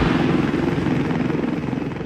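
Helicopter running, its rapid rotor beat dying away steadily.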